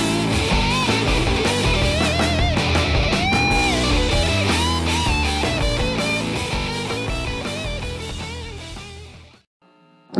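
Electric guitar played through a homemade Tonemender effects pedal with a heavy, distorted tone: a thick low riff under lead notes that are bent and shaken with vibrato. It fades out over the last couple of seconds.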